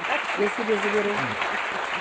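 Studio audience applauding steadily, with a voice speaking briefly over the clapping.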